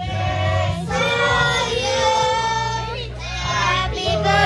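High-pitched voices singing, holding long notes, over a steady low backing.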